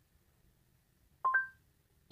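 Android Auto's Google voice-assistant chime from the car speakers: two short rising beeps about a second in, acknowledging a spoken answer to its reply prompt.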